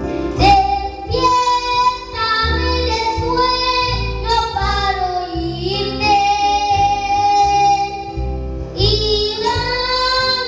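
A young boy singing into a microphone, holding long notes of a slow melody, over backing music with a low, pulsing bass.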